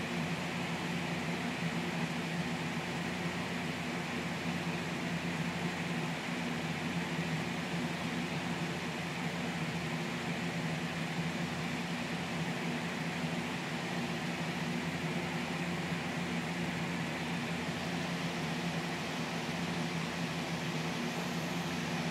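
Steady, unchanging machine hum with hiss: a low drone of several held tones, like a running fan or air-conditioning unit in a room.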